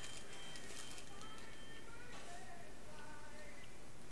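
Steady restaurant room noise with faint, brief pitched sounds in the background and light rustling of paper nugget bags and wrappers as the eaters handle their food.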